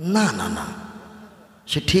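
A man's voice speaking into a microphone: one drawn-out word, a short pause, then speech starting again near the end.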